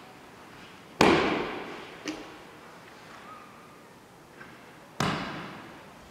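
Body and hands slapping the tatami mat as an aikido partner is taken down and pinned with a nikyo wrist lock. There is a loud sharp slap about a second in, a lighter one about a second later, and another loud slap near the end, each echoing in a large hall.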